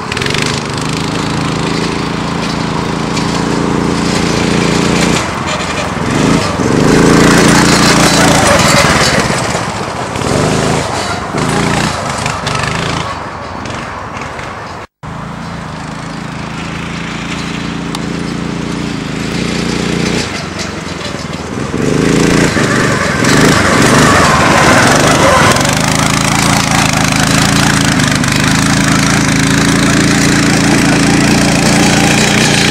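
Small 9 hp go-kart engine running, its pitch climbing again and again as the kart speeds up across the grass and settling back in between. The sound drops out for an instant about halfway through.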